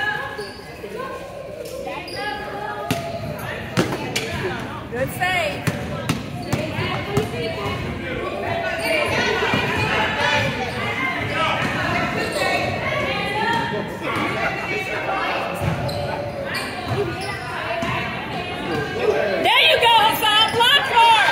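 A basketball bouncing on a hardwood gym floor during youth play, with voices calling out through the game, all echoing in a large gym.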